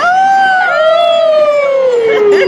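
A long howl that starts high and slides slowly down in pitch, like a wolf's howl.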